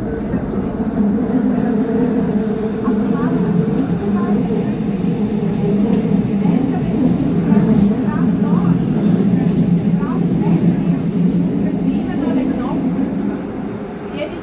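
Electric regional train running along the track, a steady hum of motors and wheels that grows louder about a second in and eases near the end, with short faint squeaks scattered through it.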